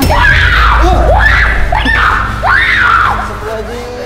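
A person screaming in a run of drawn-out wails, each rising then falling in pitch, the last trailing off near the end, in a possession (kesurupan) fit. A deep low drone runs underneath.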